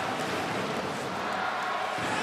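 Ice hockey arena ambience during play: a steady wash of crowd noise from the stands.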